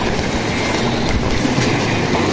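Shallow river water rushing over stones, with legs wading and splashing through it; a steady, loud noise with a few small knocks.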